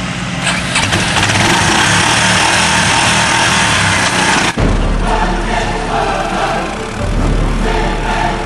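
An engine running loud and steady, cut off suddenly about four and a half seconds in, when music with a heavy bass takes over.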